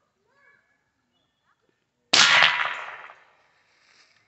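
A single shot from a PCP R8 pre-charged pneumatic air rifle: a sharp report about two seconds in that dies away over about a second.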